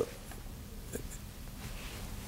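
Quiet room tone: a faint steady hiss with a couple of faint ticks, one about a second in.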